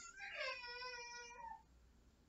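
A faint, high-pitched, drawn-out vocal sound lasting about a second and a half, its pitch rising at first and then sliding down.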